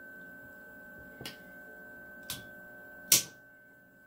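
Steady electrical hum with a thin high whine from the running inverter, and a few clicks of meter probe tips being pushed into a plastic plug's contacts; the loudest click comes about three seconds in.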